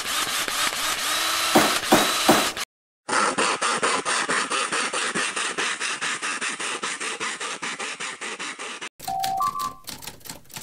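Sound-effect sequence: a noisy stretch with three sharp knocks, then about six seconds of rapid, even hand-saw strokes, roughly six a second. The strokes stop near the end and give way to a short two-note rising electronic chime.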